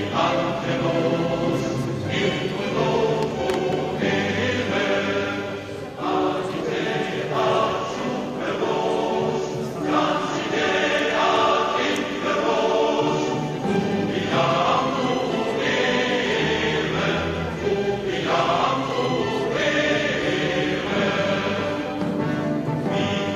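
A choir singing.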